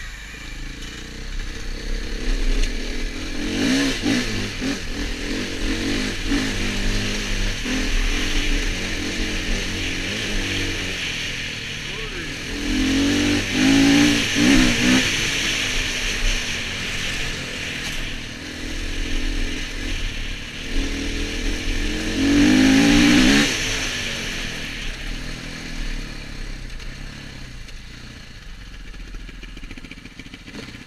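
Dirt bike engine running under way, opened up in three surges of acceleration, the loudest about halfway through and again about three-quarters of the way in. It then eases off and goes quieter near the end as the bike slows.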